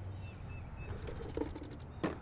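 Small birds calling: a few short, high chirps, then a rapid high trill in the second half, over a steady low rumble.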